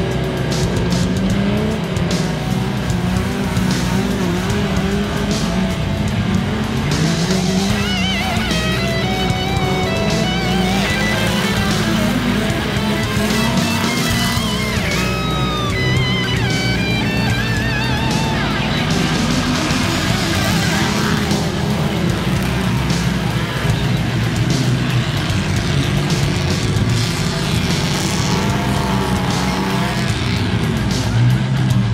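Off-road rally race trucks' engines running and revving hard in mud, mixed with background music.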